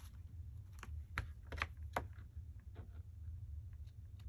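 Several light, irregular clicks and taps from hands handling and pressing a glued paper pocket onto a journal page on a cutting mat, over a steady low hum.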